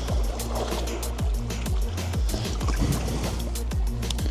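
Background music with a steady beat of deep bass kicks and quick hi-hat ticks, with rushing creek water underneath.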